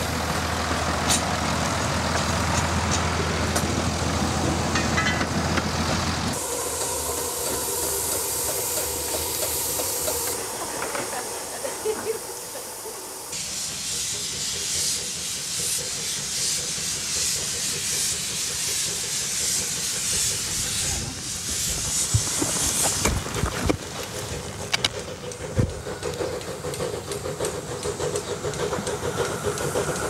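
A narrow-gauge diesel locomotive running for the first few seconds, then a ZB class narrow-gauge steam locomotive hissing loudly as steam blows from its cylinder drain cocks while it starts its train, with a few sharp knocks later on.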